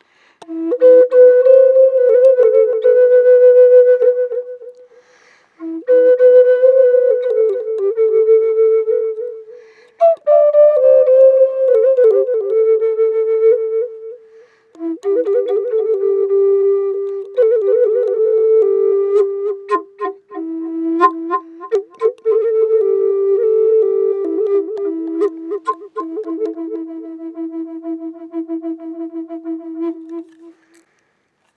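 Native American flute played solo: a slow melody in four breath-length phrases, each drifting downward in pitch, with short pauses between them. The last phrase is the longest and ends on a long, held low note.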